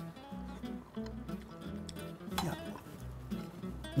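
Quiet background music with a plucked guitar.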